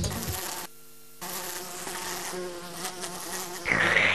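Cartoon sound effect of a fly buzzing, a steady drone, after the channel's music cuts out about half a second in. Near the end comes a short, louder rushing sound.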